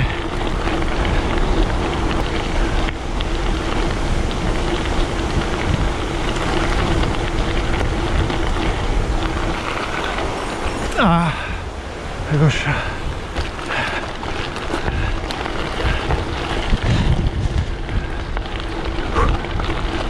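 Gravel bike tyres rolling and crunching over a gravel track, with wind buffeting the handlebar-mounted microphone. A faint steady low hum runs under it for the first half, and a few short voice-like sounds come near the middle.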